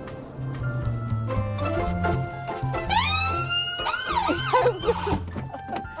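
Background music, then about three seconds in an ambulance siren starts: one rising wail followed by quick up-and-down yelps for a couple of seconds. It was set off by accident when the crew member meant only to toot the horn.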